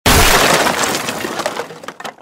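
Crash sound effect of a crate smashing apart. It starts suddenly and loudly, then trails off over about two seconds in crackling, scattering debris.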